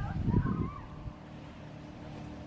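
Wind buffeting a phone microphone in a short low rumble near the start, then a faint steady hum.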